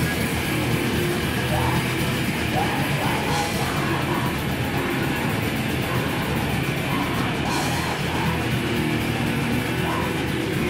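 Live heavy metal band playing loud and without a break: distorted electric guitars, bass guitar and a drum kit with crashing cymbals.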